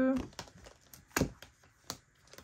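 Clear plastic binder pockets and a paper card crinkling and rustling as they are handled, with two sharp taps, one just over a second in and one near the end.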